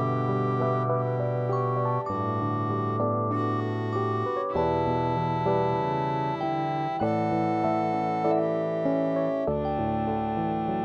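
Instrumental music played on a keyboard with a synthesized, electric-piano-like sound: sustained chords over a held bass note, with the chord changing about every two and a half seconds.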